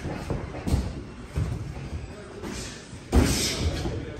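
Several dull thumps of punches landing during boxing sparring, with the hall's echo, the loudest about three seconds in.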